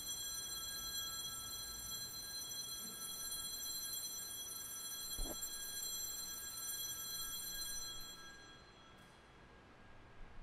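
Altar bells, a cluster of small handbells, ringing out at the consecration: several clear high tones that hold and fade away about eight seconds in. A soft knock comes about five seconds in.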